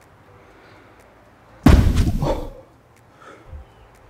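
A loud sudden thud about one and a half seconds in, dying away over about a second, over a faint steady outdoor hiss.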